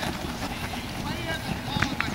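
Flag football players shouting on the field: one shouted call about a second in, over a low rumble of wind on the microphone.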